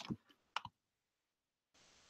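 Two faint clicks of a computer mouse, about half a second apart, then a short faint hiss near the end.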